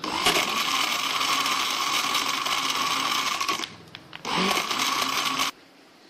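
Westpoint countertop blender running at speed, blending milk, apple and ice cubes into a shake. It runs steadily for a few seconds, drops out briefly, runs again for about a second and then cuts off suddenly.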